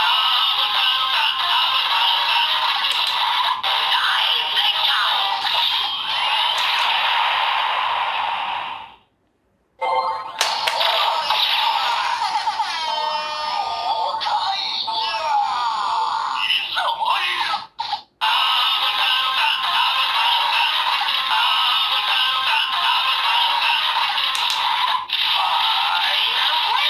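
Electronic sound from Super Sentai toy weapons, the DX Zangla Sword and DX Donblaster, with Avataro Gears loaded: loud toy-speaker music with little bass. About nine seconds in it stops for a moment, then electronic voice calls and effects follow, including a 'Gokaiger!' call, before the music starts again near the two-thirds mark, building toward a 'Final Wave!' finisher call.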